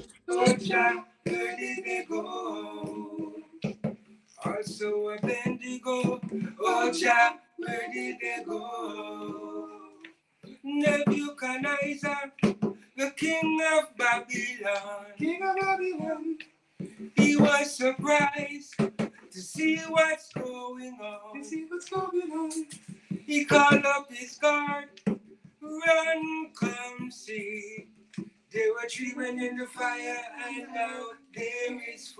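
Male voices singing a reggae song without instruments, in phrases broken by short pauses.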